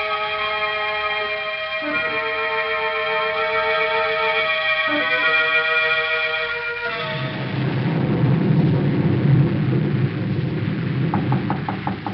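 A musical bridge of sustained organ chords that shift twice, giving way about seven seconds in to a steady rain-and-wind sound effect. Near the end come a few quick knocks on a door.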